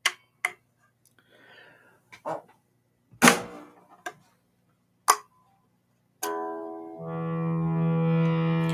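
Electric guitar strummed through an amplifier to test a newly fitted volume pot. A few short strums are cut off quickly, then a chord is left ringing steadily from about six seconds in, growing louder a second later, with the signal coming through: the new pot works.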